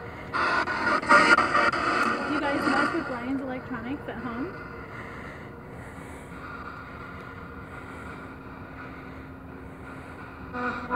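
Portal spirit box sweeping through radio stations: choppy, unintelligible voice fragments for the first four seconds or so, then a steady hiss of static with a faint hum.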